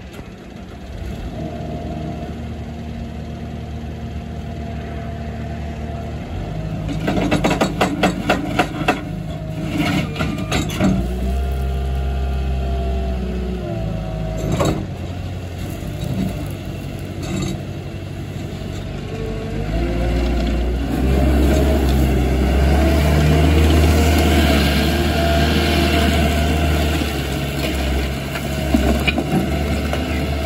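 Caterpillar 277D compact track loader with its diesel engine running. The revs rise about seven seconds in, with a run of clanking knocks and a hydraulic whine that rises and falls as the boom and bucket are worked. From about twenty seconds the engine runs harder as the loader drives off on its tracks.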